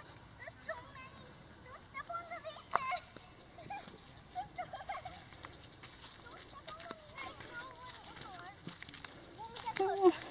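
Faint children's voices talking and calling in short scattered snatches, over light crunching footsteps on sandy gravel, with a louder voice right at the end.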